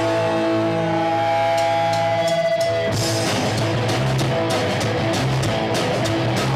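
Punk rock band playing live through Marshall guitar amps: an electric guitar chord is held and rings for about three seconds, then the whole band with drums comes back in at full tempo.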